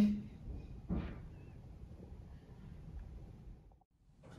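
Faint room tone with one short, soft noise about a second in, cutting out to silence just before the end.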